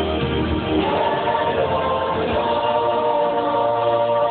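A mixed vocal ensemble of men and women singing sustained chords into handheld microphones, with a change of chord about a second in.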